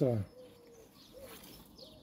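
A bird cooing faintly: a low, steady call repeated a few times.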